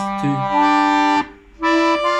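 Piano accordion playing sustained right-hand chords. One chord is held and then breaks off a little past a second in, and another chord starts and is held.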